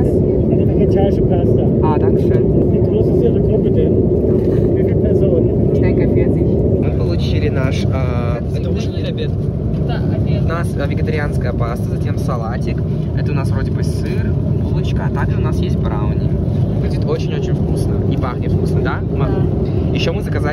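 Steady cabin noise of a jet airliner in flight: a constant low rush of engines and air, with a steady hum that fades about six seconds in. Voices talking in the cabin from about seven seconds in.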